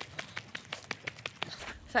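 Quick, regular footfalls of someone running on a dirt path, about five or six light thuds a second, with a woman starting to speak near the end.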